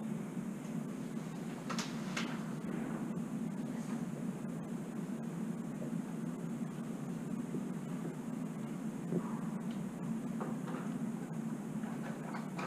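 Indoor room tone: a steady low hum, with a few faint knocks and clicks, two of them about two seconds in.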